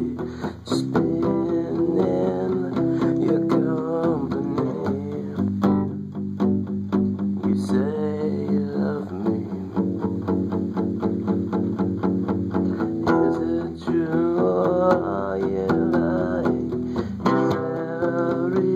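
Acoustic guitar strummed in a steady rhythm, chords ringing, as an instrumental passage of a song.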